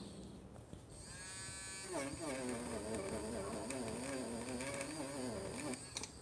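Small battery-powered electric eraser motor buzzing. It spins up with a rising whine about a second in, then runs with a wavering pitch as its spinning eraser tip rubs stray green coloured pencil off the paper, and stops just before the end.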